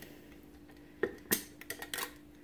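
Metal screw lid coming off a glass mason jar: two sharp clicks about a second in, then a few lighter ticks.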